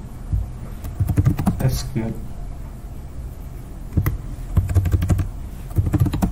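Typing on a computer keyboard: a quick run of key clicks about a second in, another burst from about four seconds in, and more keys near the end.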